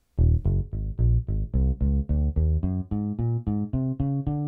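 Electric bass voice of a Kawai DG30 digital piano, played on the left-hand split of the keyboard as a quick, even run of single notes, about five a second, climbing in pitch. The last note is held a little longer.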